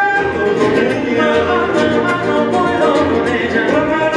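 Romantic bolero played live by a guitar trio: men singing in close harmony over plucked acoustic guitars, a high requinto and an acoustic bass guitar.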